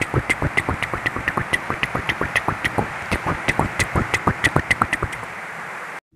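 Rain drumming on an uninsulated tiled roof: a steady hiss with dense sharp taps, several a second, recorded so loud that the audio is distorted. It stops abruptly at the end.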